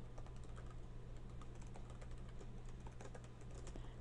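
Faint typing on a computer keyboard: a quick, irregular run of light keystrokes.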